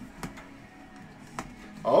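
Faint background music in a small studio, with a few sharp clicks from handling near the microphones, once at the start, again a quarter second later and again past the middle.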